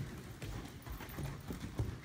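A horse's hooves striking soft sand arena footing at a canter: a run of dull, low thuds, the loudest just before the end.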